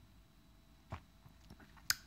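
A man drinking beer from a glass: quiet sips and a soft swallow about a second in, then a short sharp click near the end.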